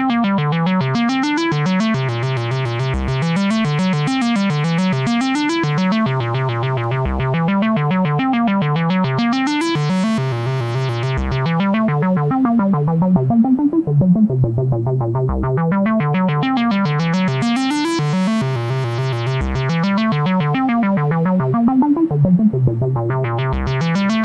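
Eurorack modular synthesizer playing back a looping note sequence from a SebSongs PolySeq. The oscillator runs through a filter with no VCA, so the notes run on into one another over a steady low note. The filter opens and the sound brightens twice, around ten and nineteen seconds in, and a short low knock recurs about every four seconds.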